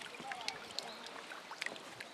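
Shallow river water splashing and sloshing in small, scattered splashes as children wade and work hand dip nets, over a steady background wash of water, with faint distant children's voices.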